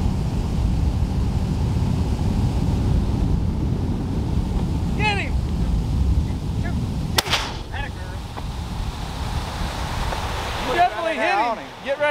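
A single rifle shot about seven seconds in, sharp and sudden, over a steady low rumble of wind on the microphone.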